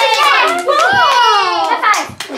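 Hands clapping in quick, uneven claps, with excited, high voices calling out over them.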